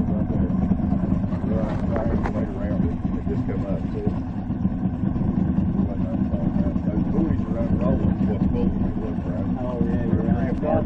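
Yamaha 225 outboard motor running steadily at low speed with an even rumble and no change in pitch.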